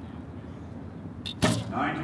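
Recurve bow being shot: a single sharp snap of the string and limbs on release about a second and a half in, over a low steady outdoor background.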